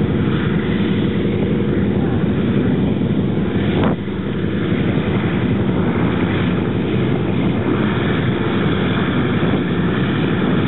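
Antonov An-2's nine-cylinder Shvetsov ASh-62 radial engine and propeller running steadily as the biplane taxis on grass. There is a short break in the sound about four seconds in.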